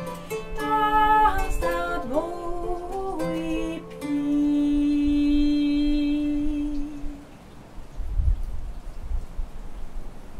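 A kora is plucked under a woman's voice, which slides between notes and then holds one long note from about four seconds in. The music fades out about seven seconds in, leaving low rumbling noise.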